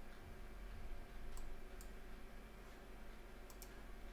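Computer mouse clicks: two single clicks a bit under half a second apart, then a quick double click near the end, over a faint steady low hum.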